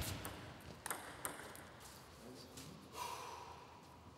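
Table tennis ball ticking a couple of times as a rally ends, then a short, steady high squeak about three seconds in.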